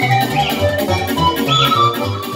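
Romanian nai (pan flute) playing a fast sârbă dance melody, with quick arching slides in pitch and a longer held note near the end, over a keyboard accompaniment with a steady bass beat.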